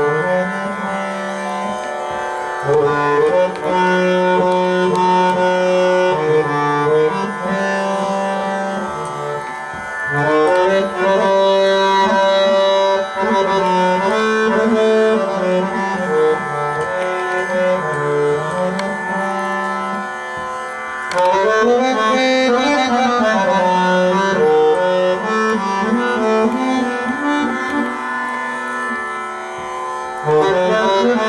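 Harmonium playing a slow, unmetered aalap in raga Ahir Bhairav: sustained reedy notes moving step by step in unhurried phrases.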